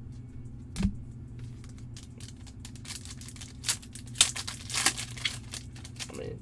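Trading cards and a clear plastic card holder being handled: a soft knock about a second in, then a run of plastic crinkles and clicks from about three seconds in, loudest just past four seconds.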